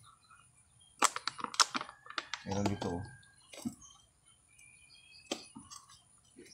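Scissors cutting a thin clear plastic cup: a few sharp separate snips and cracks of the plastic, the loudest about a second in and again soon after, with fainter clicks later.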